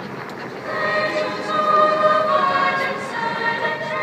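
Girls' choir singing, the voices coming in about half a second in and holding sustained notes.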